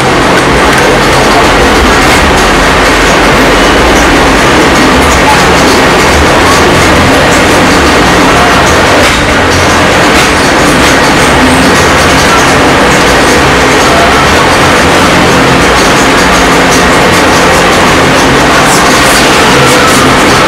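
Canon PIXMA iP7240 inkjet printer drawing in its disc tray and running its feed mechanism, with steady mechanical clatter over a loud, constant background noise.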